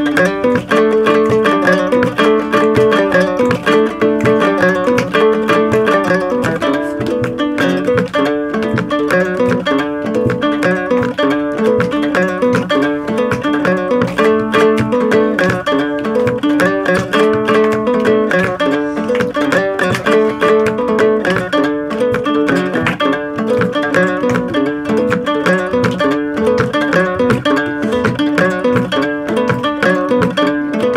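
Instrumental West African string music: a plucked acoustic guitar and a small lute play a busy, repeating figure of quick notes.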